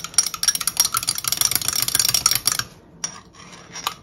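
Metal teaspoon stirring briskly in a small glass jar, scraping and clinking rapidly against the glass as fibre reactive dye powder is dissolved in a little water. The stirring stops about two and a half seconds in, leaving a few light taps.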